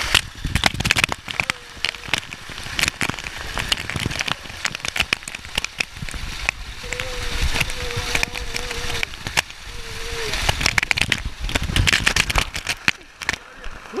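A heavy cascade of pool water pouring and pounding directly onto the camera, a dense, irregular crackling spatter of drops hitting right at the microphone, easing off near the end.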